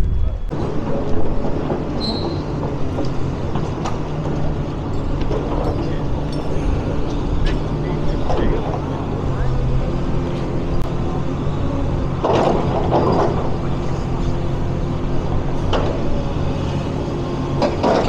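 Komatsu hydraulic excavator's diesel engine running steadily on a demolition site, with occasional sharp knocks and a louder clattering stretch about two-thirds of the way through.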